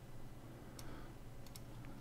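A few faint computer-mouse clicks, about a second apart, over a low steady hum.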